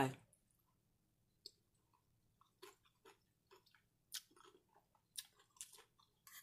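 Close-miked chewing of a spoonful of chicken tortilla soup: quiet, irregular small clicks and wet mouth sounds that come more often in the second half.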